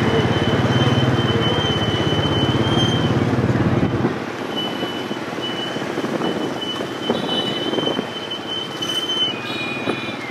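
Motorbike engine and rushing wind and road noise heard from the pillion seat of a moving motorbike taxi, with a thin steady high whine. About four seconds in, the low rumble drops away and the noise turns lighter.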